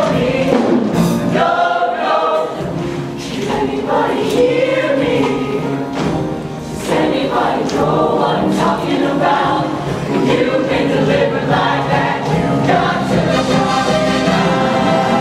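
High-school show choir of mixed voices singing in full chorus with live band accompaniment.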